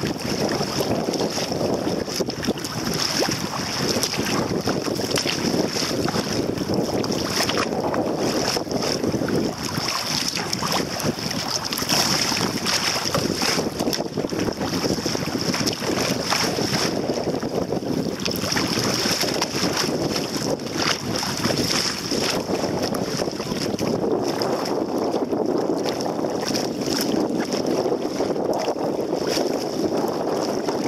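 Wind buffeting the microphone, with choppy water slapping and splashing against a kayak's hull: a steady rush broken by frequent small splashes.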